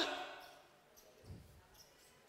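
A man's amplified voice breaks off and its echo dies away in the hall over about half a second. Then near silence, with one faint low thump about a second in.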